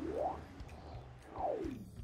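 Animated-film whoosh sound effects over a low, steady music bed. One sweep rises in pitch at the start, and another falls about a second and a half in.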